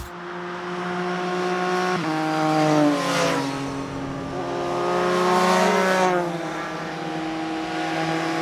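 Two motorcycles riding past, their engine notes swelling as they come close about three seconds in and again around five to six seconds, with the pitch dropping as they go by or ease off the throttle.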